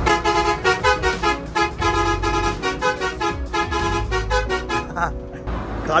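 A multi-tone musical bus horn plays a short tune of steady notes, repeated in quick phrases over low engine and road rumble. It breaks off briefly near the end.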